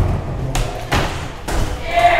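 Skateboards knocking and thumping on wooden ramps, several sharp thumps roughly half a second apart.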